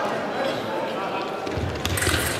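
Busy sports-hall ambience around a fencing piste: voices talking and echoing, with a low thudding rumble starting about one and a half seconds in and a sharp click near the end.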